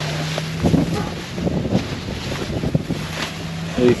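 An engine running with a steady hum, under wind buffeting the microphone, with scattered rustles and knocks from a cardboard box of small flags being handled.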